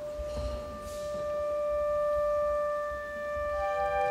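An orchestra starting a piece with one long held note on a wind instrument, swelling and easing off; near the end other instruments come in on held notes above and below it.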